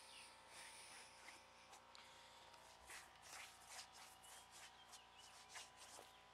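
Faint, repeated scraping strokes, coming thicker in the second half: a shoe sole being scraped on the ground to wipe off mud.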